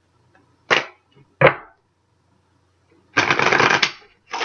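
A tarot deck being shuffled by hand: two sharp card snaps, about a second apart, early in the clip, then a dense, quick run of shuffling that lasts just under a second near the end.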